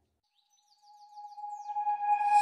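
Background music fading in: a single held note rising in level, with a run of about eight quick falling chirps like birdsong over it.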